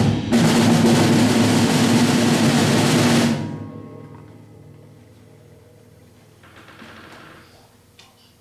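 Percussion ensemble of drums and mallet instruments playing a loud sustained roll that stops about three seconds in and rings away into a pause.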